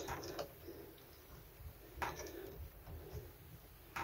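Faint click about two seconds in as a small end cap is pressed into the centre of a chrome cross-head bath tap handle, with a brief knock near the end.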